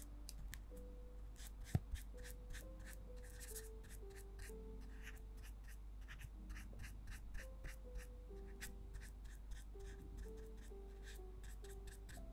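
Close-miked light, irregular taps and scratches of a small brush and tool working glossy resin onto a tiny clay miniature, with one sharper click about two seconds in, over soft background music.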